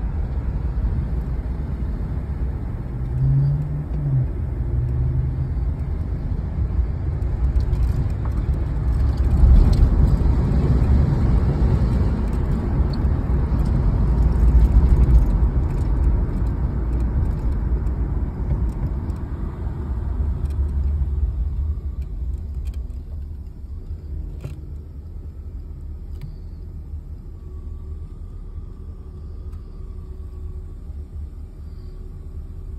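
Box-body Chevrolet Caprice driving, heard inside the cabin: a steady low rumble of engine and road noise. It is loudest about ten to fifteen seconds in and turns quieter after about twenty seconds.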